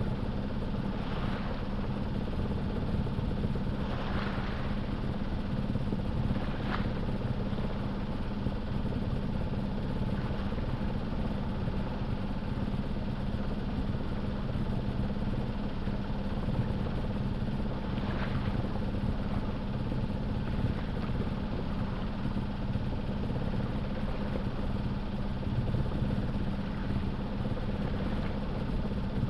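A sailboat's auxiliary engine running steadily under power in a calm, with a constant low hum. Now and then a faint wash of water is heard along the hull.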